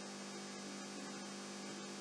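A low, steady electrical hum with a faint hiss underneath: mains hum in the recording's audio chain.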